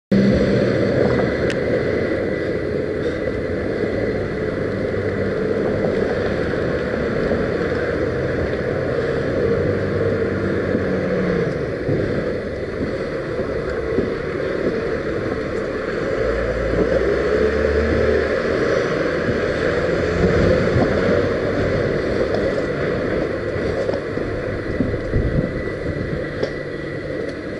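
Steady running noise of the small vehicle carrying the camera as it travels along the street, with wind on the microphone and a faint steady high whine.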